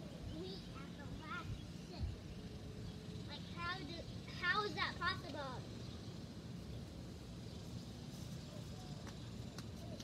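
A voice talking and calling from some way off, loudest about four to five seconds in, over a steady low outdoor rumble.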